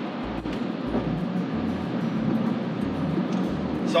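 Steady tyre and wind noise heard inside the cabin of a Rivian R1T electric pickup cruising at highway speed, with no engine sound.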